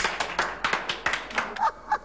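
Hands clapping quickly and evenly, about five claps a second, giving way near the end to short bursts of laughter.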